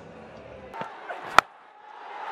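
Low stadium crowd murmur, then a single sharp crack about a second and a half in: a cricket bat striking the ball.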